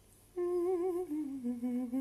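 A woman humming a short tune with vibrato, starting about half a second in: one held note, then a lower one.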